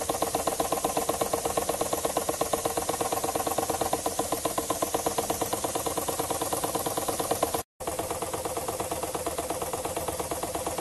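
Small model engine made from a KLG spark plug, running on compressed air: a rapid, even beat of exhaust pulses at a steady speed. The sound cuts out for a moment about three quarters of the way through.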